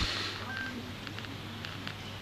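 A short electronic beep from a mobile phone: one steady high tone lasting about a fifth of a second, about half a second in. A brief rustling hiss comes just before it, at the start.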